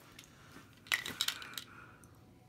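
A sharp click with a short ringing clatter of small hard objects about a second in, followed by a few lighter clicks.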